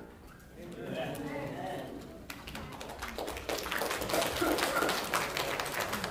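Congregation sitting back down in wooden pews after a hymn: a low murmur of voices, then from about two seconds in a dense scatter of knocks, clicks and rustles as people settle into their seats and handle their hymnals.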